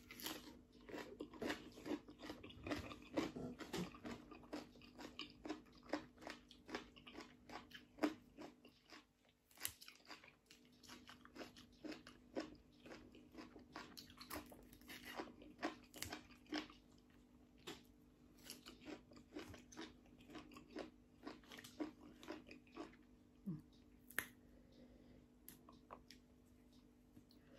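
A person chewing raw leafy wild greens at close range: many crisp crunches, thickest in the first eight seconds and sparser after. A faint steady hum runs underneath.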